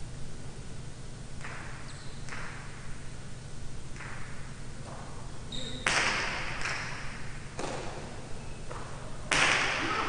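Jai alai ball (pelota) knocking sharply against the court as play resumes, about eight hard strikes that ring in the large hall, the loudest about six seconds in and just before the end.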